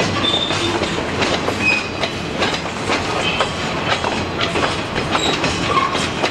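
A freight train of empty bulkhead pulpwood flatcars rolling past: steady clattering of steel wheels over rail joints. Several short, high metallic squeals from the wheels are scattered through it.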